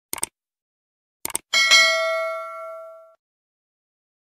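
Subscribe-button animation sound effect: two short clicks about a second apart, then a bright bell ding that rings out and fades over about a second and a half.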